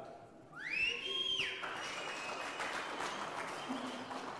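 Audience applauding, with a whistle that rises in pitch about half a second in and holds before cutting off, as the clapping builds; a second steady whistle tone carries on under the applause.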